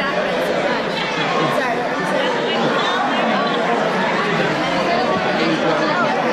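Many people talking at once: a steady babble of overlapping voices in a large hall, with no single voice standing out.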